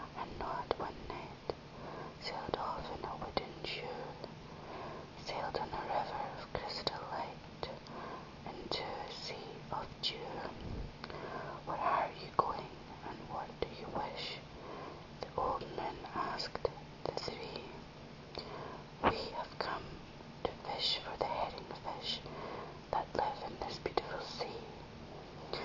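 Whispered speech, continuous, with hissing sibilants and a few soft clicks, over a faint steady low hum.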